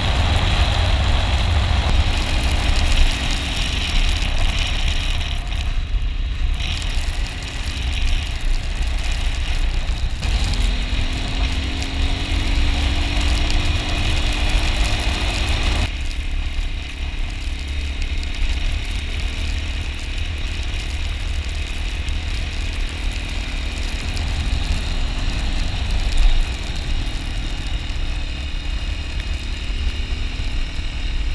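Wind rushing over the camera's microphone while riding an air-cooled 250 cc motorcycle at speed, with the engine running underneath. From about ten seconds in the engine note rises slowly, then the sound changes abruptly at about sixteen seconds.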